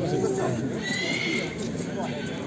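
A horse gives one short, high neigh about a second in, over men's voices talking around it.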